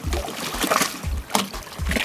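Wind buffeting the microphone over water lapping against a boat's hull, with a few short knocks.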